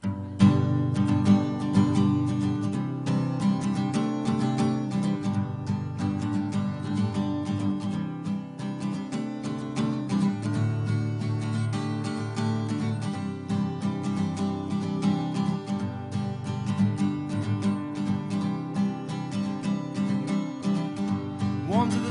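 Acoustic guitar strumming the instrumental intro of a folk song, starting about half a second in and keeping a steady rhythm, before the vocals come in.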